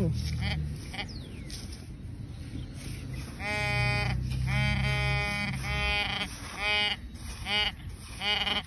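Garrett pinpointer's buzzing alert tone as it is probed through sand: a few faint short beeps at first, then from about three and a half seconds in a loud steady buzz in long bursts that break into shorter beeps toward the end. It is alerting on a buried coin close by, a dime.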